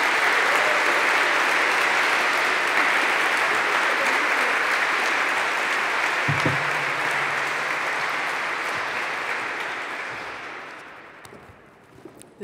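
Audience applauding in a hall, steady for about ten seconds, then dying away near the end.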